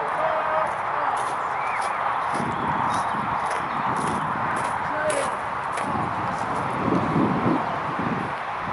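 Muskets and accoutrements clattering during drill: a string of sharp, irregular clicks and knocks as the rifles are handled, over a steady outdoor hiss and faint voices.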